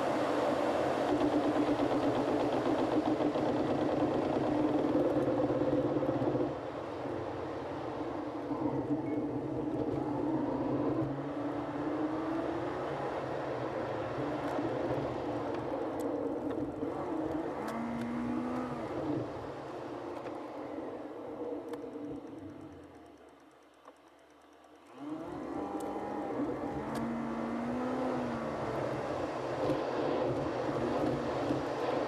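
In-cabin road and engine noise of a minivan driving at night, sped up to triple speed. A steady rumble at highway speed turns quieter about six seconds in as the car slows off the expressway. It falls almost silent for a couple of seconds while the car is stopped, then the engine's pitch rises as it pulls away.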